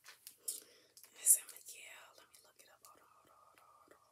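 A woman whispering and muttering under her breath while trying to recall a name, with hissy sibilants and small mouth clicks, the loudest hiss about a second in. A faint steady tone runs through the last second or so.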